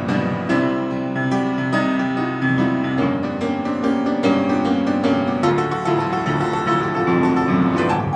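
Upright piano playing a blues passage without vocals: a steady run of struck notes and chords.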